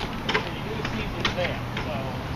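Faint, indistinct voices with a few sharp clicks, over a low steady hum.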